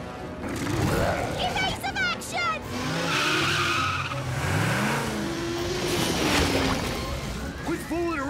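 Cartoon sound effects of a car speeding along: an engine revving up and down and tires screeching, over background music.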